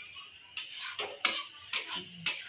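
Flat metal spatula scraping and stirring masala in a metal kadhai, several sharp scrapes against the pan. The masala is being fried (bhuna) in the pan.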